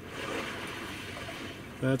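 Recorded calm sea waves from the 2020 Hyundai Sonata's Sounds of Nature feature, playing through the car's Bose speakers: a steady wash of surf that swells slightly about a quarter second in.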